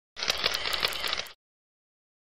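A burst of rapid clicking and rattling, about a second long, that cuts off suddenly.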